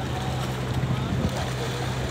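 Engine of a fishing boat running steadily, heard as a constant low hum, with wind buffeting the microphone.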